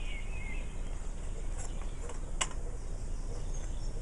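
Outdoor background noise: a steady low rumble with a few faint bird chirps in the first half-second, and one sharp click about two and a half seconds in.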